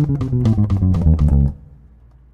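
Electric bass guitar played fingerstyle, a fast chromatic run of eighth notes at 245 bpm descending fret by fret, ending abruptly about one and a half seconds in.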